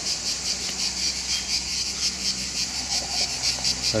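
A steady chorus of insects chirping outdoors, pulsing rapidly several times a second, with a faint low hum beneath.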